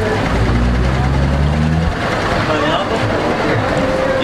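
A motor vehicle's engine running close by, a low steady hum that fades out about two seconds in, over people talking in the background.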